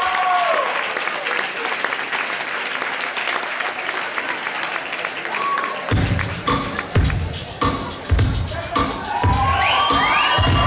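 Audience applauding. About six seconds in, dance music with a heavy bass beat of about two thumps a second starts over the clapping.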